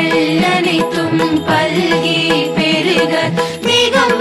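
Indian devotional music: a chanted, wavering melodic line over instruments, with sharp percussion strokes scattered through it.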